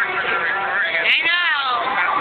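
A loud, high-pitched human squeal about a second in, its pitch rising and then falling, over steady loud music.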